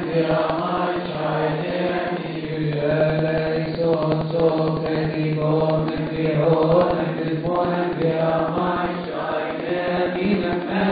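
Coptic liturgical hymn chanted by men's voices, a steady low held note under a slowly moving melody.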